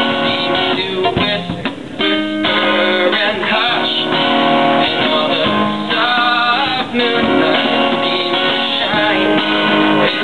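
Acoustic guitar being strummed and picked in a song, with a steady run of pitched notes and brief lulls about one and two seconds in.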